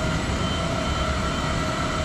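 Baggage conveyor belt running: a steady mechanical rumble with a faint constant whine over it.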